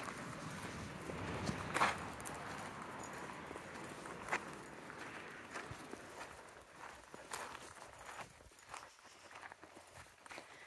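Footsteps of a person in flip-flops and a dog crunching along a gravel path, an irregular patter of small crunches and clicks, with a couple of sharper clicks about two and four seconds in.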